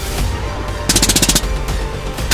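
A rapid burst of rifle fire, about nine shots in half a second, about a second in, over background music.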